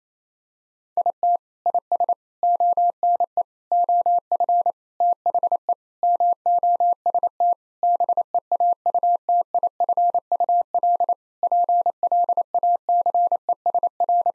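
Morse code sent as a single steady sine-like tone at 28 words per minute, short dits and longer dahs keyed in rapid groups, beginning about a second in. It spells out the sentence "It is one of the most beautiful places" a second time.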